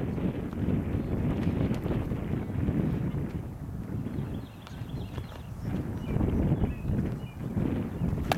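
Wind buffeting the microphone: a low, gusting rumble that rises and falls, with a few faint ticks.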